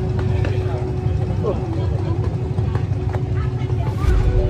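Steady low engine rumble, with people talking in the background.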